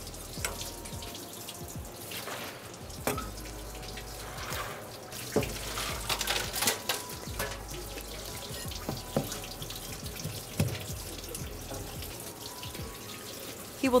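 Kitchen tap running steadily onto a fish and a plastic cutting board, with scattered scraping strokes and clicks from a stainless steel fish scaler working the scales off.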